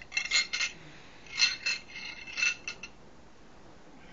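Small metal pieces jingling and clinking in three short bursts about a second apart, with a bright ringing tone.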